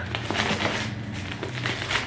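Packaging being handled and opened: a dense, crackly rustle of many small clicks as a small boxed guest-book set is worked open by hand.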